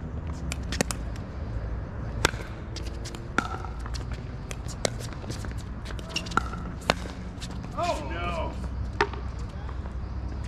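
Pickleball rally: sharp pops of composite paddles striking the hollow plastic ball, about a dozen irregularly spaced hits, with the loudest a little over two seconds in.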